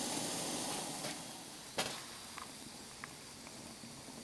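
Steady hiss of alcohol burners heating water in mess tins. It fades over the first two seconds or so, with a single sharp click near the middle.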